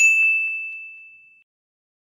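A single bright ding, a chime sound effect struck once and ringing out, fading away over about a second and a half.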